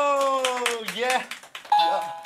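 A man's long drawn-out "eee" vowel, held for about a second and sliding slowly down in pitch, then breaking into short excited laughing voice sounds.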